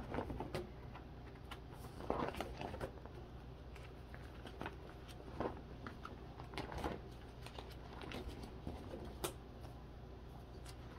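Plastic binder sleeve pages rustling as Pokémon trading cards are slid into their pockets and pages are handled, with scattered light clicks and taps at irregular intervals.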